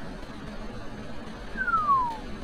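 Steady outdoor background noise, then a single whistle about one and a half seconds in that slides down in pitch over about half a second.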